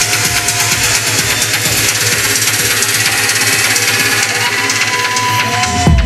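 Techno from a DJ set on a club sound system: a hissing noise wash and held synth tones over a fast low pulse, with the heavy kick and bass coming back in at the very end.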